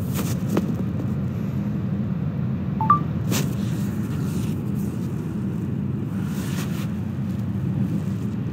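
Steady low rumble inside a concrete tunnel, with a few faint clicks and a short two-note rising electronic beep about three seconds in.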